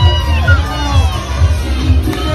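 Parade music with a steady bass beat, mixed with a cheering crowd and children shouting.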